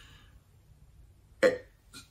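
A pause in a man's talk: mostly quiet room tone, broken by one short throat or voice sound from the man, about one and a half seconds in.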